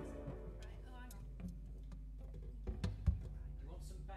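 Handling noise as an acoustic guitar is put down and instruments are swapped: a few knocks and thumps about three seconds in. A keyboard chord fades out at the start, and a low hum runs underneath, taking on a pulsing buzz near the end.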